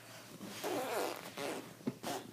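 Rustling, scraping handling noise as the camera is picked up and moved by hand, with a sharp click just before the end.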